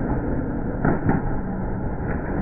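A candlepin bowling ball striking the pins: two sharp clattering knocks about a second in, over the steady low noise of a bowling alley.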